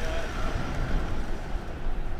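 A Mercedes-Benz van driving past close by: steady engine and road noise with a deep rumble.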